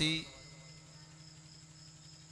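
A man's voice through a PA system finishes a word at the start. Then comes a pause filled with a faint, steady electrical hum and a thin high whine from the sound system.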